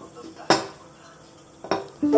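Cutlery clinking against a plate, twice: a sharp, ringing clink about half a second in and a softer one near the end.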